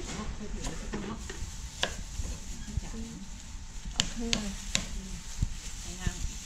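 Kitchen knife slicing on a round wooden chopping block: a handful of sharp, irregular knocks as the blade cuts through and meets the wood.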